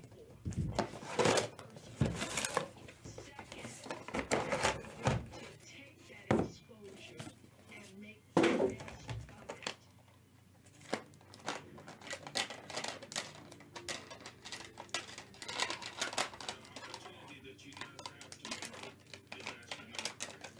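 A cardboard box being opened, then hard plastic graded-card slabs clicking and tapping against each other as a stack of them is handled and set down, in irregular clicks and rustles.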